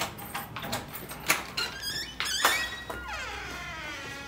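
A wooden front door being unlocked and opened: a series of clicks from the lock and handle, a loud clack about two and a half seconds in, then a falling squeak as the door swings open.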